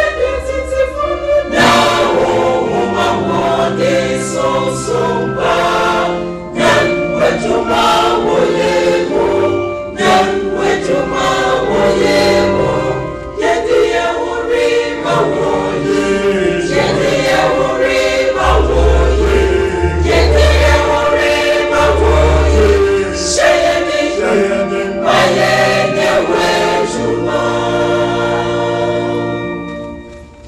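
Church choir singing a gospel song together, with deep bass notes coming in at times; the singing dies away near the end.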